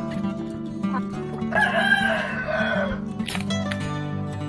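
A rooster crows once, a call of about a second and a half with a falling end, over background acoustic guitar music. A sharp knock follows just after.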